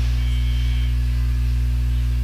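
Steady low mains hum with a stack of overtones, loud and unchanging, with a faint high whine over it in the first second.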